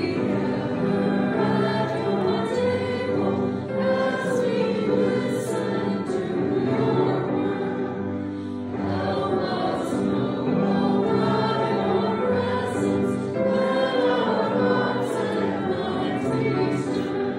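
A group of voices singing a hymn together, accompanied by a pipe organ holding sustained chords. The hymn moves in phrases, with brief breaths between them about four and nine seconds in.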